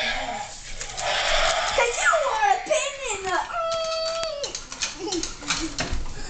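Robot dinosaur toys giving electronic animal-like calls: a hissing roar, then a run of falling, gliding screeches and one flat held cry near the middle, with sharp clicks of plastic and motors.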